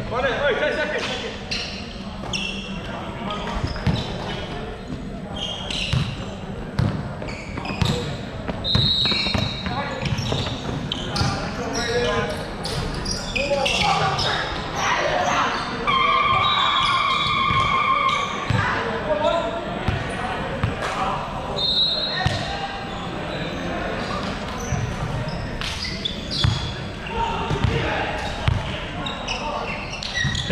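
Live indoor basketball game in a large, echoing gym: a basketball bouncing on the hardwood court in many sharp knocks, sneakers squeaking, and players calling out. A held pitched tone lasts about two seconds near the middle.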